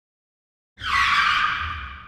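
A screeching sound effect with a low rumble beneath it. It starts suddenly a little under a second in and fades away over about a second and a half.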